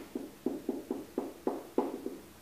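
Dry-erase marker writing on a whiteboard: a regular run of short, sharp strokes, about three to four a second, as letters are written.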